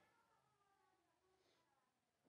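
Near silence: a gap in the recording with no audible sound.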